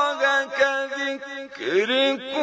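A solo male voice reciting the Quran in melodic tajwid style, holding and ornamenting a sung note with a wavering pitch. About three-quarters of the way through, the voice dips and sweeps upward in pitch into the next phrase.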